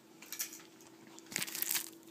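Faint rustling and crinkling handling noise as a hand reaches for and picks up a small plastic remote, in two short spells, the longer one near the end. A faint steady hum runs underneath.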